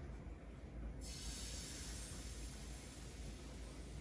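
Crepe batter sizzling in a hot oiled pan: a steady hiss that starts abruptly about a second in as the batter goes into the pan, over a low hum.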